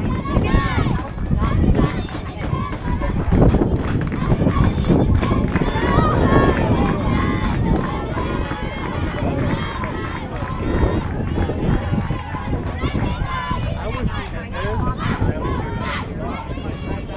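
People talking nearby, indistinctly, over a heavy fluctuating low rumble.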